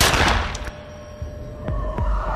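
A single pistol shot sound effect, a sharp crack that rings away over about half a second, followed by a low, steady music tone.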